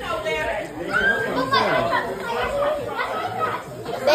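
Overlapping, indistinct voices of several excited children talking and calling out over one another.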